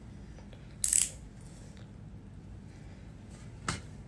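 A sharp plastic click about a second in, and a fainter one near the end, from handling a small makeup concealer tube, over a low steady room hum.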